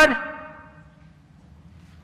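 A man's voice finishing a drawn-out word at the very start, the sound ringing on in the large chamber and fading away over about a second, followed by a pause with only faint room tone.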